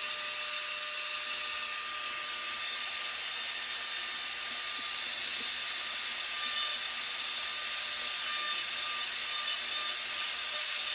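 High-speed rotary carving handpiece with a small diamond bit grinding wood on a carved bird head: a steady motor whine under the hiss of the bit abrading the wood. The grinding swells louder a few times in the second half.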